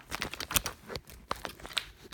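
Handling noise from a phone's microphone as it is picked up and moved: fingers rubbing and knocking on the phone, a quick irregular run of clicks and rustles, the sharpest about half a second in.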